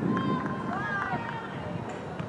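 Several people shouting and calling out from a distance, high voices rising and falling in short calls, over a steady low outdoor rumble.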